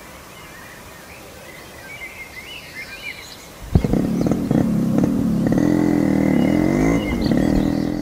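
A few bird chirps over quiet outdoor ambience, then a little under four seconds in a motorcycle engine starts and is revved, its pitch rising and falling unevenly.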